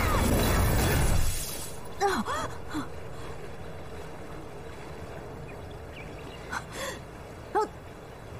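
A loud, noisy burst of fantasy-battle sound effect that cuts off about a second in. It is followed by a woman's short pained gasps and groans, several times, as she is wounded.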